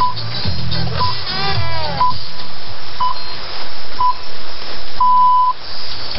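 Six-pip hourly time signal received over shortwave radio: five short beeps a second apart, then a longer final beep marking the top of the hour. The end of a music track fades out under the first two pips, and receiver hiss runs beneath.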